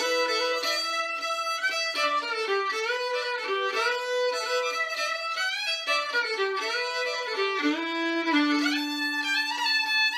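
Solo fiddle playing an old-time Appalachian tune: a fast melody bowed over a held low string droning beneath it.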